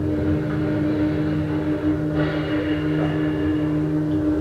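Steady electronic drone from the 1966 episode's soundtrack, played back on the reactors' screen: a constant low hum, with a second, lower tone pulsing in and out from about a second in.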